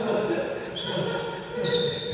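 Players' voices and footsteps with a shoe squeak on a sports hall floor. Near the end comes a sudden clack followed by a short high ringing, as badminton rackets are tapped together at the net.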